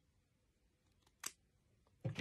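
A single short snip of small scissors cutting into the front of a lace front wig, about a second in, against near silence.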